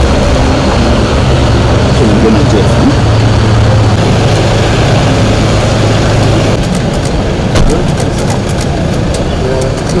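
Vehicle engine idling with a steady low hum that changes about two-thirds of the way in. A run of short sharp clicks follows near the end.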